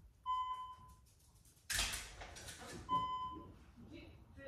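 Two short electronic beeps at the same pitch, about two and a half seconds apart, with a burst of noise between them as a door is opened.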